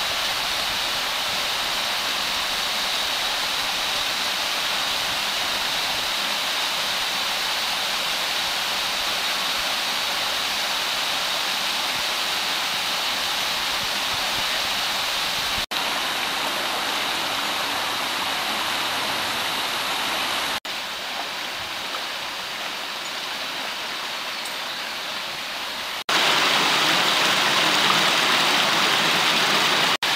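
Steady rush of water from a rocky mountain stream and its small waterfalls. It shifts suddenly in level a few times and is louder for the last few seconds.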